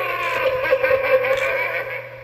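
Gemmy animated Freddy Krueger mini figure playing its recorded voice through its small built-in speaker: one long drawn-out vocal sound at a fairly steady pitch, fading near the end, over a steady low hum.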